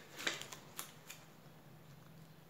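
Faint paper handling of a Panini football sticker being stuck into an album page: a few light rustles and clicks in the first second or so.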